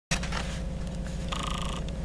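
Railway passenger car running, heard from inside: a steady low rumble with a fast, even pulse. A brief high-pitched tone sounds about one and a half seconds in.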